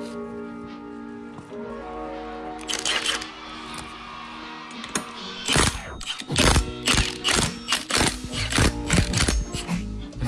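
Cordless impact wrench hammering to loosen the flywheel bolts on a Honda K-series engine, a short rapid rattle a few seconds in, over background music that turns into a steady drum beat about halfway through.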